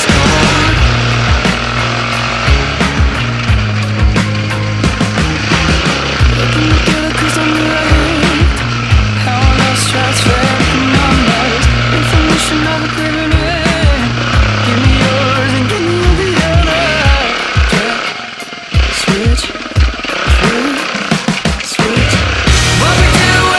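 Dirt bike engine revving up and down as it rides, mixed with a rock music soundtrack. The engine sound dips briefly near the end.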